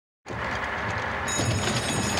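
Racetrack ambience with the field of horses loaded in the starting gate: a steady noisy hum with a low rumble, cutting in abruptly after a brief silence, with faint thin high tones joining partway through.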